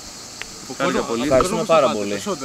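A steady high-pitched insect drone runs under the scene, with voices talking from just under a second in.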